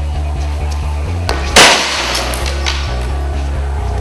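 A single loud strike about a second and a half in: the hammer head of a steel war hammer smashing into a mail shirt backed by cardboard boxes. Background music with a steady bass beat plays under it.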